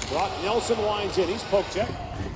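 Ice hockey game commentary from a broadcast: a commentator's voice talking steadily.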